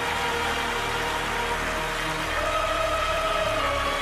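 Orchestral music in a slow, soft passage of sustained notes over a low held bass. A brighter held melody note comes in about halfway through.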